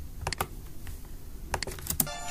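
Short, sharp clicks of a computer keyboard and mouse, a pair about a quarter second in and a quick cluster near the end.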